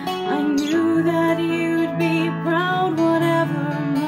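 A woman singing a melody, with wavering held notes, over her own strummed acoustic string instrument.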